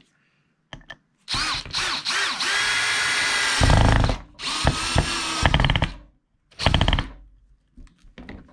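Cordless drill fastening a wooden hanger board to the back of a fish mount, running in three bursts: a long run of about three seconds whose whine rises as it speeds up, a shorter run, then a brief burst near the end.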